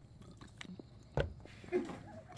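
Mouths chewing soft, sticky Hi-Chew fruit candy just put in, a quiet run of small wet clicks with one sharper click just past a second in. A short "huh" near the end.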